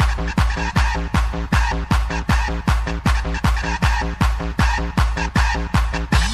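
Techno track in a DJ mix: a fast, steady kick drum with short, choppy pitched stabs repeating between the beats.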